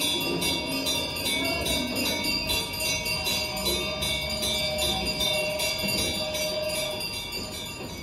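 Small metal bells rung rapidly and without pause, many strokes a second, ringing on until they stop at the end. They come from a documentary soundtrack played through a hall's speakers.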